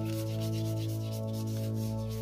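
A cloth rag rubbing back and forth over an oil-paint monoprint on paper and its white PLA plastic lattice, in repeated scrubbing strokes, with steady sustained background music.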